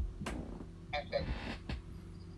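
A sharp click about a quarter second in and a smaller one near the end, with a short voiced sound in between, over a steady low hum.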